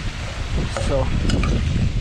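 Wind buffeting the microphone with a steady low rumble, over the hiss of potato fries frying in hot oil in a steel pan.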